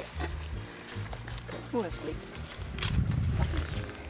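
Wind rumbling on the microphone, loudest about three seconds in, with dry garlic and onion stalks crackling and rustling as they are pulled from the soil. A brief vocal sound comes near the middle.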